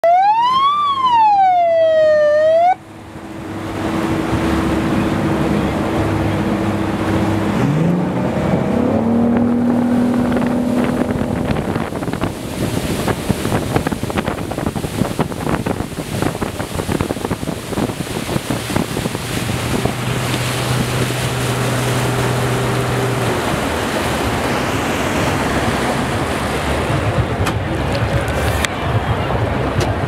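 A siren wails up and down and cuts off abruptly under three seconds in. Then a rescue motorboat runs fast across open water, engine drone mixed with wind and water noise, the engine pitch rising about eight seconds in.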